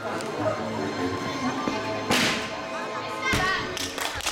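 A gymnast's vault: a sharp slap about two seconds in as she strikes the springboard and vaulting table, then a heavy thud a little over a second later as she lands on the landing mat.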